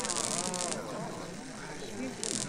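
Electric buzz of a flickering neon sign, loud in the first second and then fading, over the chatter of several overlapping voices.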